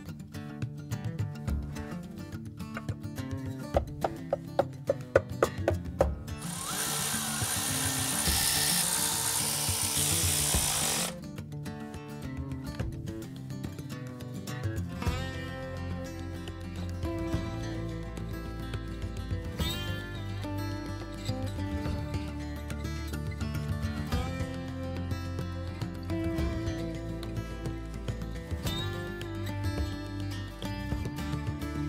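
Background music with a power tool running loud and steady over it for about four seconds, starting some six seconds in. A quick run of sharp clicks comes just before it.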